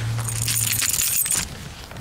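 Small metal pieces jingling and clinking for about a second and a half, then dying away, with a low steady hum under the first part.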